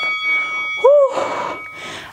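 A bell-like chime rings once and fades over about two seconds. About a second in, a short sound rises and falls in pitch.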